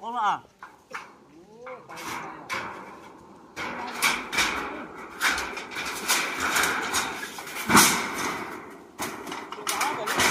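Thin corrugated metal roofing sheets being shifted and stacked, giving a run of rattles and scrapes from about three and a half seconds in. The loudest bang comes just before eight seconds. A short voice is heard at the start.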